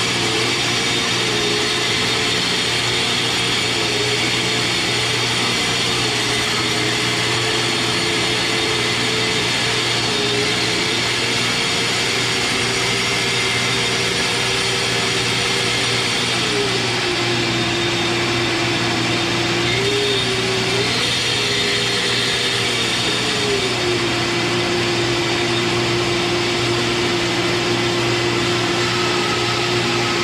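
Shopsmith Mark V 520 motor driving its bandsaw, the blade cutting a circle through a wooden blank, with a steady motor hum throughout. The motor's tone dips lower a couple of times as the cut goes on.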